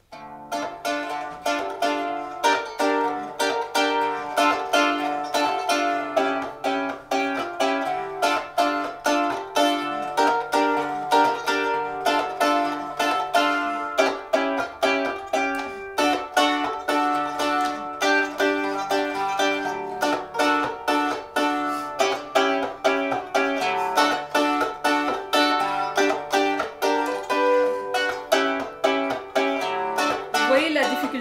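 Qanun (Arabic plucked zither) played with finger plectrums: a quick, unbroken stream of plucked notes and chords, the strings left to ring. It is a chord sequence during which the left hand must keep shifting the tuning levers, so a full G major chord can't be sounded.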